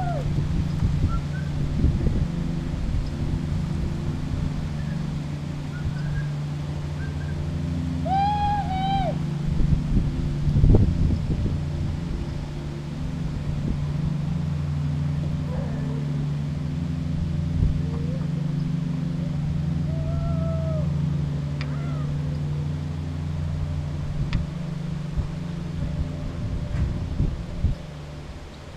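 A steady low motor hum runs throughout. Over it come a few drawn-out high calls, one about eight seconds in and another about twenty seconds in, and a single louder knock about eleven seconds in.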